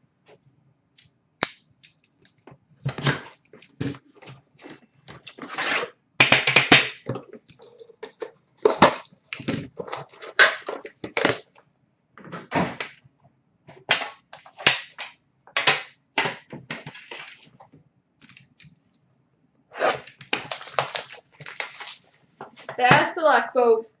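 Handling noise from a metal trading-card tin being unwrapped and opened: irregular clusters of sharp crackles and rustles, some very loud, with pauses between them.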